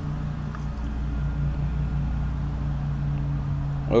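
A steady low machine hum with two low steady tones, running evenly with no sharp events.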